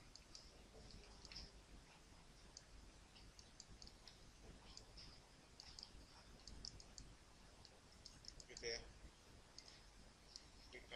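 Faint, irregular clicks of a computer mouse, singly and in quick pairs, over quiet room tone.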